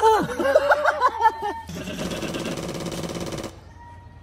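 A man yelling and exclaiming in wordless, sliding cries, then a steady buzzing noise of about two seconds that cuts off abruptly.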